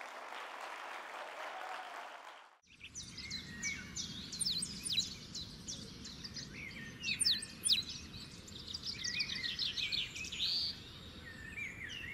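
Audience applause that cuts off suddenly about two and a half seconds in, followed by birds chirping and singing over a low steady rumble, with the loudest chirps near the middle.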